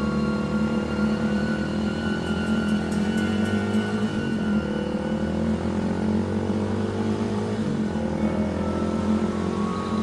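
Motorcycle engine accelerating, its pitch climbing steadily and dropping back twice, at about four and eight seconds in, as it shifts up through the gears, with soft background music under it.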